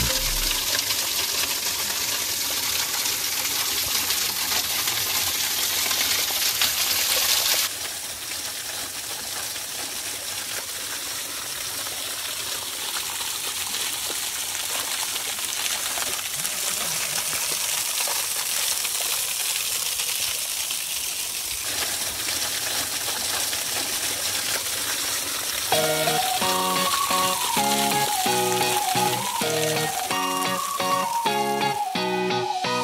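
Spring water falling and splashing over rock, loudest for the first eight seconds or so, with the sound shifting again about 22 seconds in. Music comes in near the end.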